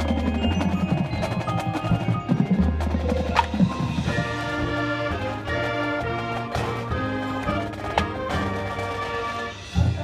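Marching band playing, led by the front ensemble's marimbas and other mallet percussion, with held chords over a low sustained bass note and scattered sharp mallet strikes.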